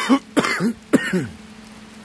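A man coughing and clearing his throat in three short bursts over about the first second, then quiet.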